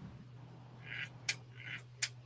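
Animatronic toy macaw giving two short, faint squawks about a second apart, with a couple of sharp clicks in between and just after.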